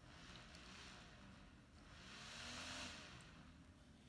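Very faint whir of a mini DC motor spinning a small plastic drone propeller, swelling a little about two to three seconds in.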